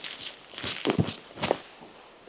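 A few footsteps of a person walking on gritty, rubble-strewn asphalt, each a short scuffing step.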